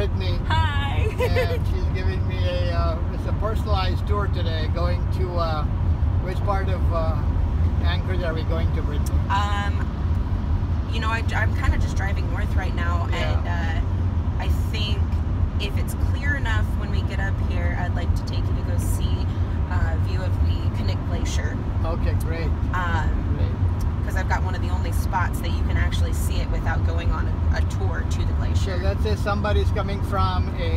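Steady low road and engine drone inside the cabin of a Chevrolet moving at highway speed, under continuous conversation.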